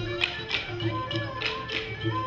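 Live Khmer folk music from a traditional ensemble, with hand drums and struck percussion keeping a steady beat under a sustained melody line.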